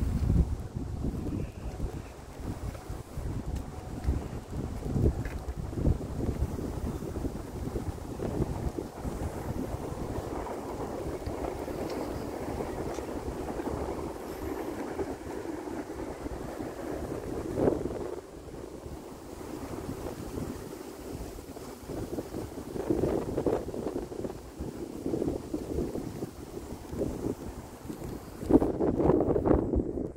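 Wind buffeting the phone's microphone in uneven gusts, with stronger bursts at the start and near the end.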